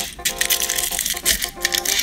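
Rapid, irregular clicking and rattling of a plastic-rimmed Mylar filter scraping against the inside of a Fujifilm 100–400mm lens hood as it is slid down into it, over background music with held tones.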